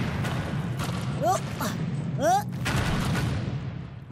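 Cartoon sound effects of a cave-in: rocks and ice crashing down in a dense, continuous clatter over a low rumble. Two short cries come through, about a second and two seconds in.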